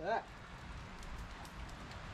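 Faint steady rain noise with a few soft ticks of drops, after a short spoken word at the start.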